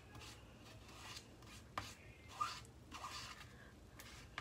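Faint scraping of a small squeegee spreading black chalk paste across a silkscreen stencil, a few short separate strokes.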